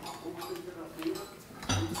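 Light metallic clinks and taps from a microphone and its stand being handled and adjusted, with a low thump near the end and a faint voice in the background.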